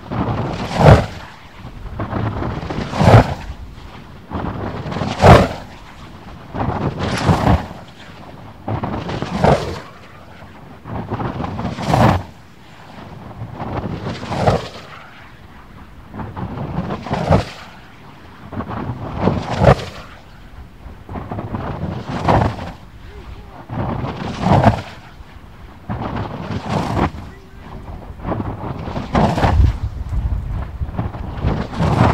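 A 100-inch Kinetic RC glider dynamic soaring at very high speed, tearing past the microphone about every two and a half seconds. Each lap is a loud whoosh that swells and dies away in about a second, about a dozen in a row.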